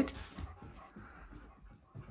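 Dogs sniffing at each other at close range: soft, irregular breathy sounds that fade after the first half-second.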